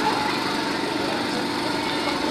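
A steady small-engine drone holding one constant pitch, with faint scattered voices under it.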